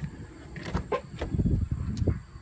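A 2002 Toyota Corolla's car door being opened: a few sharp latch clicks, then low thumps as the door swings open and the phone is handled.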